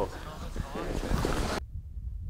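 Wind rushing over the microphone with the hiss of sprayed powder snow, a voice faintly in it. The noise cuts off abruptly about one and a half seconds in, leaving a low rumble of wind.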